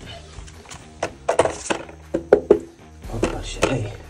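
A few sharp knocks and thuds as a bathroom scale is handled and shifted on the floor.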